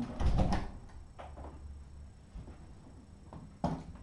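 Knocks and clatter of things being handled in a small room: a cluster of sharp knocks in the first half second, a single knock about a second in, and another sharp knock near the end.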